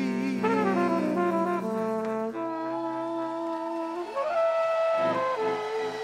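Live brass section, trumpet and trombone, playing long held chords that step to new pitches every second or two.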